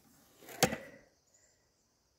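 A single sharp knock just over half a second in, preceded by a brief faint rustle.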